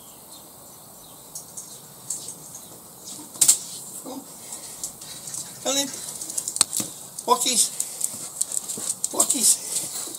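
Scattered clicks, knocks and rustles as a person and a black Labrador come out of a doorway onto paving, with a sharp knock a few seconds in. From about four seconds on come several short voice sounds, not words.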